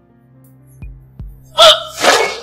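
Tense film score with two low drum hits, then a woman's short, sharp gasp of shock near the end, the loudest sound.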